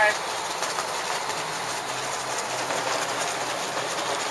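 Steady rushing of wind and water around a boat at sea, with a low boat-engine hum coming in about a second and a half in.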